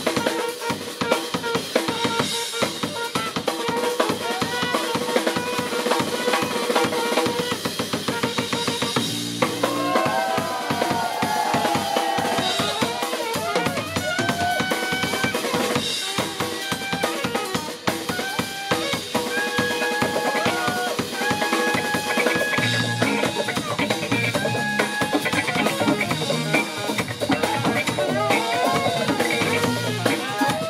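Live band playing: a drum kit keeps a busy beat under saxophone lines, with electric guitar in the mix.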